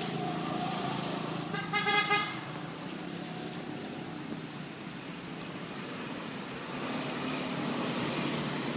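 A vehicle horn sounds once, briefly, about two seconds in, over the steady noise of passing road traffic.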